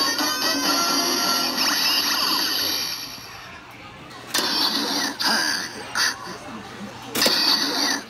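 DX Build Driver toy belt playing its electronic transformation music and effects through its speaker for the first three seconds. After a quieter stretch come a few sharp plastic clicks as a Full Bottle is pulled out and another pushed in. The belt sounds again near the end.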